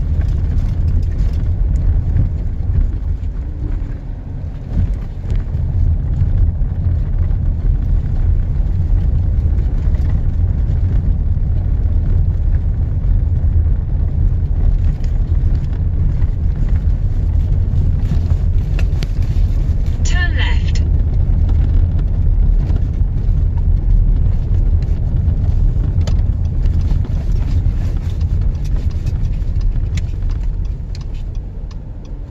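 Steady low rumble of a car driving slowly along a city street, heard from inside the car. About two-thirds of the way through, a brief high-pitched tone sounds for under a second.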